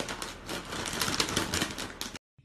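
Potato chip bag crinkling under a cat that stands on it and pushes its head into it: a dense run of rapid crackles, busiest in the second second.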